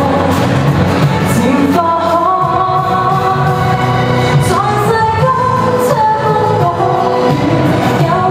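A woman sings a Cantonese pop song live into a handheld microphone over pop accompaniment, holding long sustained notes.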